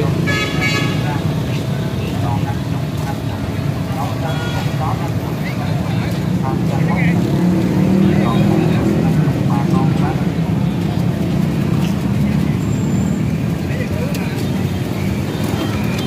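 Many motorbike and scooter engines running and moving off at close range, growing louder about halfway through. A horn toots briefly at the start, with people talking in the background.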